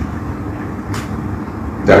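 Steady low rumble of background noise, with a faint click about a second in.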